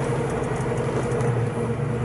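Pontiac 400 V8 with a Flowmaster exhaust running steadily at a gentle cruise, heard from inside the cabin as a steady low drone over road noise.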